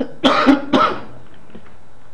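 A man clearing his throat in two short coughs, both in the first second.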